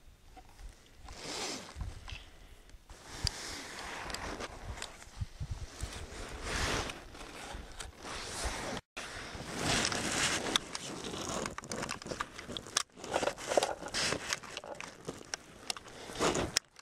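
Handling noise: winter clothing and gear rustling and scraping against snow, with a few small knocks. The sound drops out abruptly twice.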